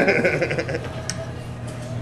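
A man's laughter trails off in the first half second. Then a steady low hum from the room carries on under no other clear sound.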